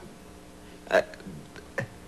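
A man's short hesitant "uh", followed near the end by a second brief vocal sound, over quiet room tone.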